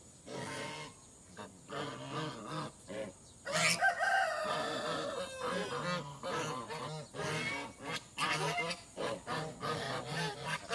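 A flock of African geese honking and calling in many short repeated calls, with one longer, louder drawn-out call about three and a half seconds in.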